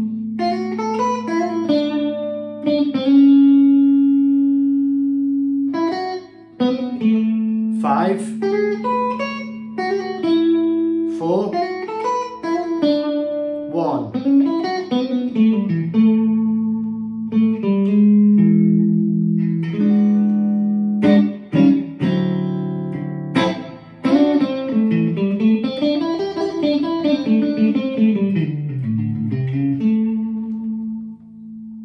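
Fender Stratocaster electric guitar playing blues lead phrases built from A7 arpeggio licks: picked single notes and long held notes, slides up and down the neck, and a few short chord strikes.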